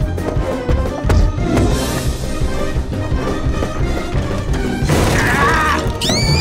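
The attraction's orchestral soundtrack plays throughout, with a crash about a second in. High, falling, gliding cries start near the end.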